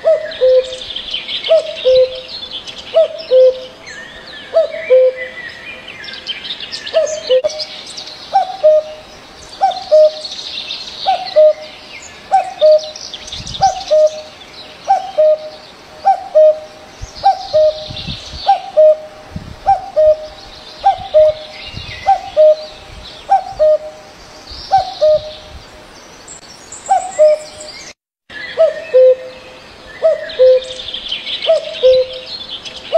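Cuckoo calling: a low two-note hoot, the second note lower than the first, repeated over and over about once a second, with smaller birds chirping and twittering higher above it. The sound cuts out briefly near the end.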